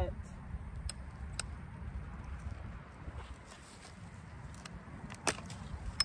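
Long-handled loppers cutting through a peach tree branch: a couple of faint clicks, then one sharp snap near the end as the branch is cut through, over a steady low rumble.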